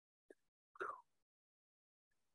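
Near silence, broken by a tiny click about a third of a second in and a short faint sound just under a second in.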